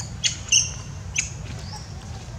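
An infant macaque giving a few short, high-pitched squeaks, the loudest about half a second in, over a steady low background rumble.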